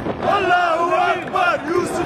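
A group of men chanting and singing together loudly in a celebration chant, several voices in long rising-and-falling phrases.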